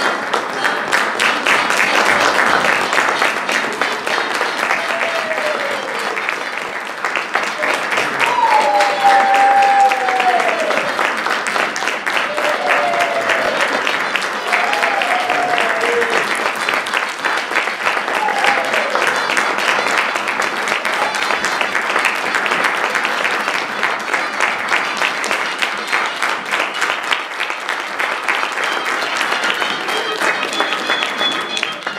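Theatre audience applauding steadily during the cast's curtain call, with a few brief calls heard over the clapping in the middle.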